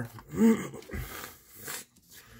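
A short, low voiced sound, then a soft thud and a brief papery rustle as a scratch-off lottery ticket is set down on a wooden table.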